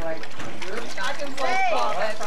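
People's voices, untranscribed talk and exclamations, with one high rising-and-falling vocal sound about one and a half seconds in.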